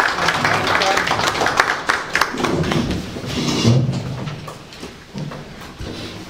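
A roomful of people applauding, with several voices talking over the clapping. The clapping thins out about halfway through and the room grows quieter.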